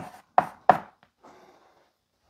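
Chalk striking a blackboard twice in quick succession, about a third of a second apart, as the last strokes of a letter are written, followed by a faint scuffing sound.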